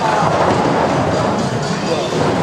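People talking in the background of a busy room, with music playing underneath; no ball strike.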